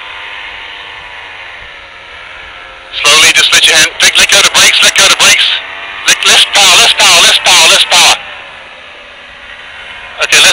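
A distant paramotor engine drones overhead, its pitch dipping and rising slightly. From about three to eight seconds in, a man's voice breaks in loudly in two bursts and covers the drone.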